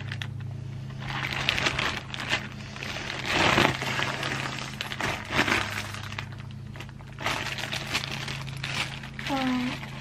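A plastic bag crinkling and rustling in irregular bursts as it is handled and filled, over a steady low hum.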